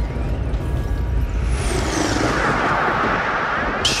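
Take-off sound effect: a steady rush of noise like jet or rocket thrust, with a high whistle that falls in pitch about halfway through.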